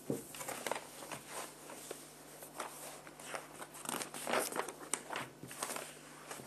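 Irregular crinkling and rustling with scattered small clicks and crunches, busiest about four seconds in.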